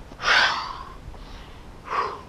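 A man's loud, breathy exhale as he lowers from plank down to the mat, followed near the end by a second, shorter breath.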